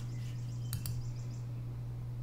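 Low-level room tone with a steady low electrical hum, and two faint clicks in quick succession about three quarters of a second in.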